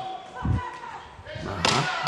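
A single dull, low thud about half a second in: a boxing glove landing a punch, heard through the ringside microphone.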